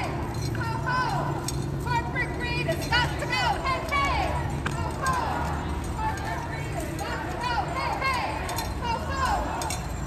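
Indistinct voices at a street protest, with short, high-pitched calls repeating over a steady low hum of street noise and no clear words.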